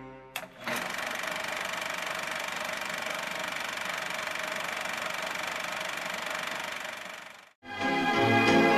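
A film projector running with a steady, even mechanical clatter. It cuts off suddenly near the end. The tail of a short intro jingle fades out at the very start.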